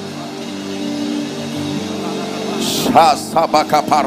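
Soft held chords of background worship music, under a congregation praying aloud. About three seconds in, a voice breaks in close to the microphone, praying rapidly in short, loud syllables.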